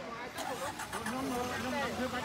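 Several people talking at once over a background of motor traffic, with a few short clicks about half a second in.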